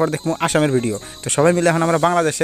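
A voice speaking or chanting in a flat, unnaturally level pitch, like a robotic or auto-tuned voice effect, in short phrases with a brief gap about a second in.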